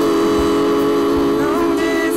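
Women's voices singing a hymn in harmony, holding one long, steady note.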